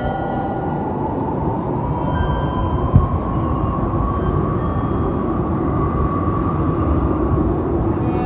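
A steady rumbling noise with a faint whine that rises slowly in pitch, and a single thump about three seconds in.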